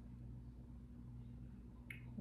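Quiet room tone with a steady low hum, and one small click near the end.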